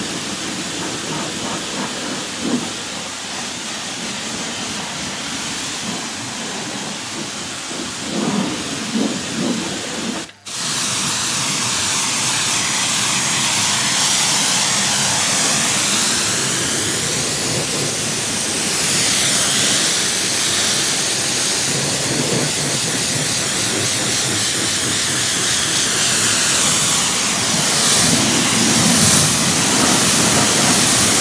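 A Kränzle K7 pressure washer's jet rinsing snow foam off a car's wheel, arch and lower panels: a steady hiss of high-pressure water hitting paint and alloy. It breaks off briefly about ten seconds in and comes back louder and brighter, with the jet close on the wheel.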